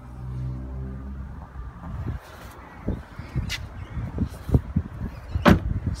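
A steady low hum for about the first second, then knocking and rustling as someone climbs out of a Holden VF SV6 ute, ending in one sharp knock near the end that fits the car door shutting.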